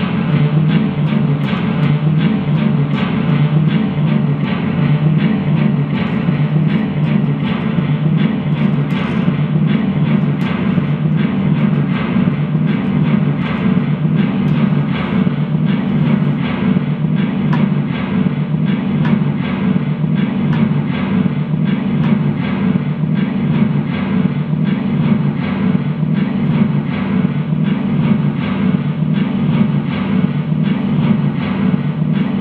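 Loud, dense electric guitar noise through an amplifier: a steady low drone with an evenly repeating pulse.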